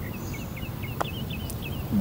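A bird chirping in a quick run of short notes, several a second, over low steady outdoor background noise. A single sharp click cuts in about a second in.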